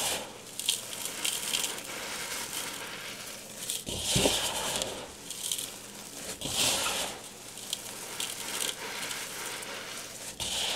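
Bare hands squeezing and crumbling dry, powder-coated chalky chunks: a run of irregular soft crunches with crumbs and powder spilling, the loudest crunches about four seconds in and again near seven seconds.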